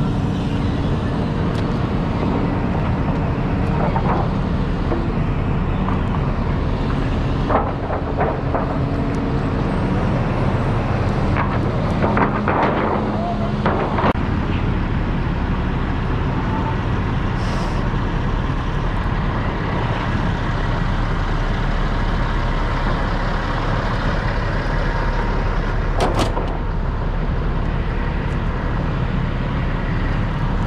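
Heavy-equipment diesel engines running steadily at idle, a constant low rumble. A few knocks and clanks come through in the middle, and there is one sharp click near the end.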